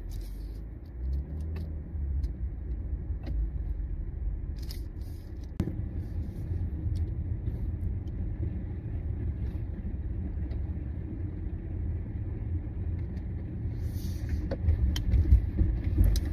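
Low, steady rumble of a car being driven, heard from inside the cabin, with a few faint clicks.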